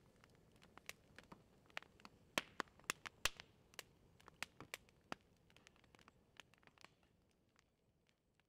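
Campfire crackling faintly, with irregular sharp pops that come thickest in the middle and die away near the end.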